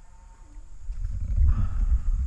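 Low, irregular rumble of wind buffeting the microphone, building up about a second in.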